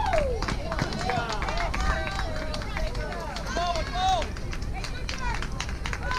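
High-pitched young voices calling and shouting in short bursts, overlapping one another, with scattered sharp clicks and a steady low rumble beneath.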